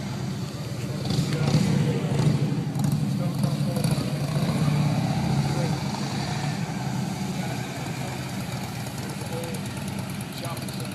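Steady low vehicle engine rumble, a little louder for a few seconds after the start, with indistinct voices faintly under it.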